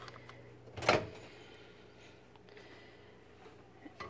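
Microwave oven door popped open with a single sharp clunk about a second in, followed by quiet handling as a bowl of water is set inside.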